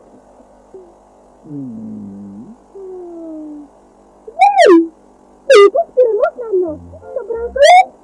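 Cartoon soundtrack of gliding synthesizer tones. A low, stepwise descending slide comes about two seconds in, then a slow falling tone. Several sharp rising and falling swoops fill the second half.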